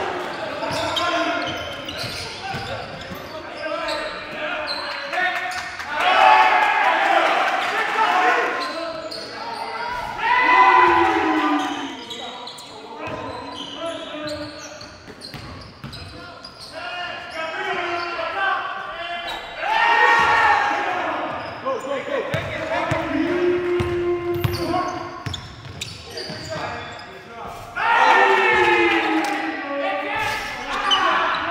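Basketball game in a gym: the ball bouncing on the hardwood floor, with players' voices calling out on and off.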